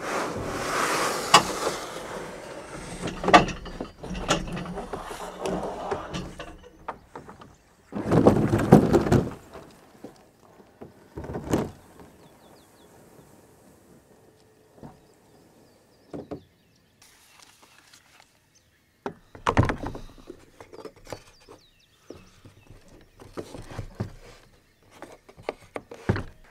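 Plastic Old Town Topwater kayak being handled: the hull scraping as it slides over a pickup truck bed, a louder rough scrape of about a second and a half some eight seconds in, then scattered knocks and clicks as gear is fitted, with quiet stretches between.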